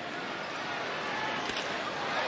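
Ballpark crowd murmur, with a single crack of the bat hitting a pitched baseball about one and a half seconds in.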